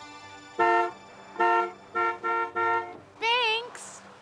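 Car horn honking four short blasts at one steady pitch, the last two close together. A voice calls out briefly near the end.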